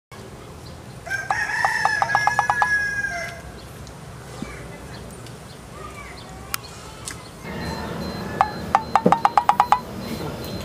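A rooster crowing twice, one call about a second in and another near the end, over a steady outdoor background.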